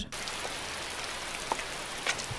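Steady hiss of falling rain on the film's soundtrack, with one faint click about one and a half seconds in.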